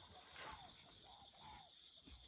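Near silence: faint countryside ambience with a steady, high insect drone and a few faint chirping calls in the middle.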